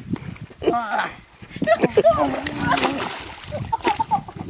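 Splashing and sloshing in shallow muddy water as two people wrestle and tumble into it, mixed with their wordless cries and yelps.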